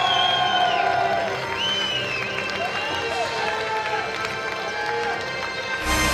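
A drawn-out voice, rising and falling in pitch, over music, with a cheering crowd underneath. Right at the end, louder music with a heavy bass cuts in.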